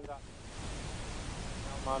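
Steady hiss of an open broadcast audio line between speakers, growing slightly louder, with a man's voice starting just at the end.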